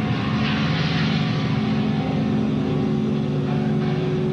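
A live rock band's amplified instruments hold a steady, low droning chord with no drums.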